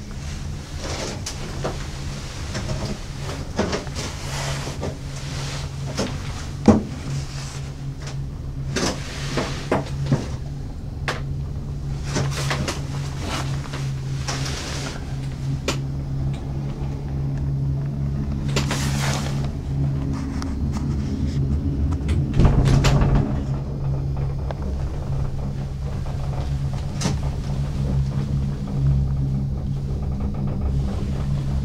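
Gondola cabin riding up the haul rope: a steady low hum, with scattered creaks, clicks and knocks from the cabin, a sharp knock about a quarter of the way in and a heavier low rumble lasting about a second about three-quarters of the way through.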